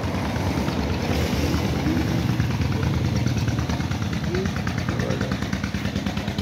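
Small motorcycle engine running steadily at idle, a rapid, even putter, with a few faint voices in the background.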